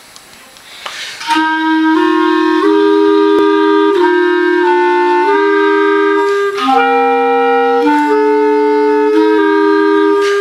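Two clarinet parts of a chorale sounding together in slow, held notes that move in steps, starting about a second in.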